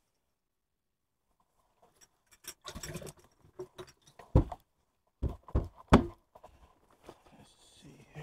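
After about two seconds of silence, a run of sharp knocks and thumps on a bass boat's deck and compartments, with rustling handling noise. The loudest four come close together near the middle.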